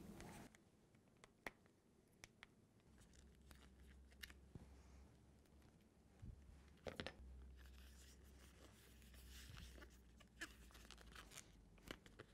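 Near silence, broken by a few faint crinkles and clicks from hands pressing sealant tape and plastic vacuum-bagging film around a hose, the clearest about a second and a half in and near the middle.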